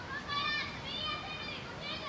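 A child's high-pitched voice calling out in three drawn-out syllables, over a steady rush of falling water.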